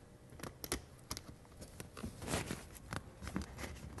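Faint, irregular clicks and taps of a metal swivel mount being handled and threaded onto the brass stud under a softbox connector.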